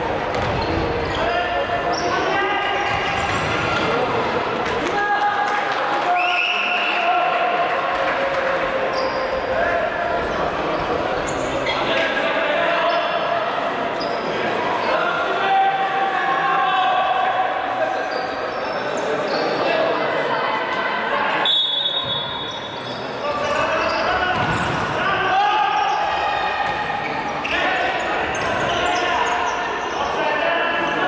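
Futsal game sounds in a sports hall: the ball being kicked and bouncing on the hard indoor court, mixed with players' calls and spectators' voices.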